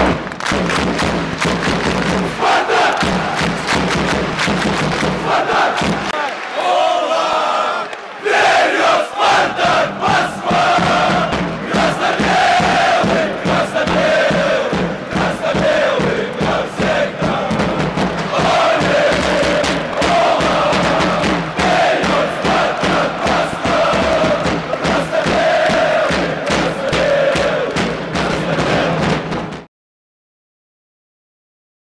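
Music with a group of voices chanting or singing over it, dense with short clattering hits. It dips briefly about a quarter of the way in and cuts off suddenly just before the end.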